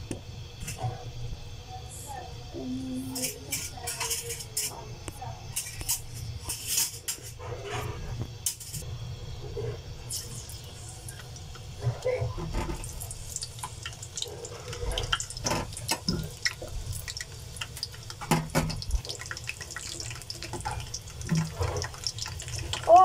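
Bitter gourds, garlic and shallots frying in hot oil in an iron kadai: a sizzle broken by many sharp crackles and spits, over a steady low hum.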